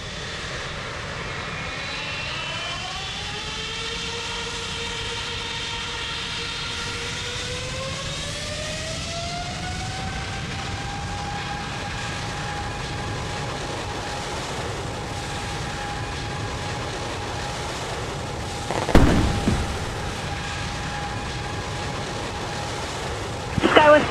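Jet engines spooling up for a takeoff roll: a whine of several tones rising together over several seconds, then holding steady over a rushing noise. About nineteen seconds in comes a sudden loud bang, the uncontained failure of the 777's left GE90 engine.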